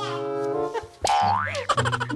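Background music with a comic cartoon sound effect: a sharp rising 'boing' glide about halfway through.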